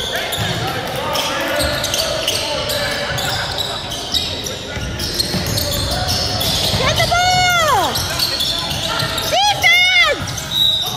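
Basketball game sounds in a gym hall: a ball bouncing on the hardwood court and a constant murmur of players' and spectators' voices. Two squeals that rise and then fall in pitch stand out, about seven seconds in and again near the end.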